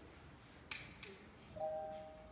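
A sharp click about two-thirds of a second in, then a single grand piano note struck near the end and left ringing, the first sound of the song.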